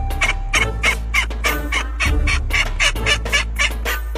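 A female white domestic duck quacking in a rapid, unbroken run of loud quacks, about five a second, over a steady low bass from background music.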